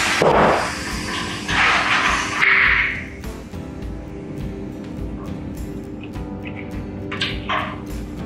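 Compressed air from a fire extinguisher converted into a tubeless booster tank rushing through the valve into a tubeless tire to seat its beads on the rim. The air comes in with a sudden loud blast that hisses for about three seconds and then fades away.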